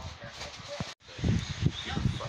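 A short snorting, snuffling vocal noise, a "snarf", among close handling noise on the microphone; the sound drops out for an instant about a second in.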